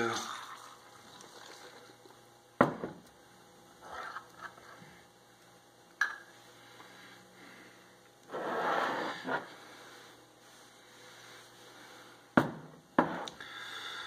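Liquid mead must sloshing inside a half-gallon glass jug as it is jostled to mix in the spices, loudest in a burst a little past the middle. Several sharp knocks come from the glass jug being handled and set down on the countertop.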